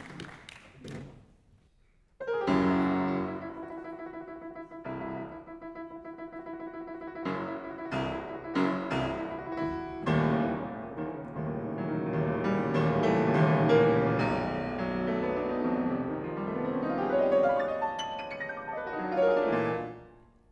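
Concert grand piano: the last of a round of applause fades out, and after about a second of quiet a solo classical piece opens with a loud struck chord about two seconds in. Separate chords ring out, then the playing grows into dense, fast passages that get louder and busier.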